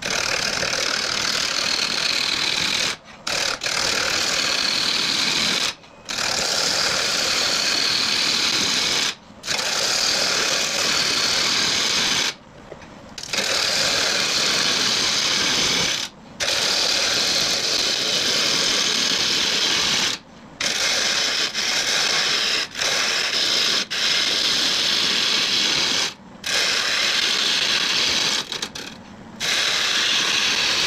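A turning tool cutting a hard wood blank spinning on a lathe: a loud, steady scraping cut in runs of a few seconds, broken every few seconds by short gaps as the tool comes off the wood. The hard wood comes off as fine sawdust rather than shavings.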